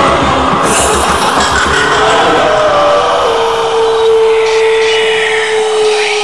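Film soundtrack: a steady low beat fades out over the first two seconds and gives way to a long, steady, high whining tone held from about three seconds in.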